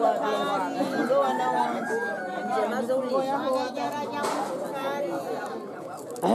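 Women's voices talking at once, in chatter.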